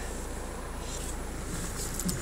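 Steady cabin noise of a Rover 75 CDTi diesel estate idling, with the air-conditioning fan blowing: a low, even hum under a soft hiss.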